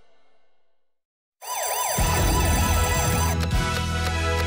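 A song fades out to a brief silence, then an emergency-vehicle siren sound effect starts, sweeping quickly up and down. About half a second later an upbeat music track with a bass beat comes in under it.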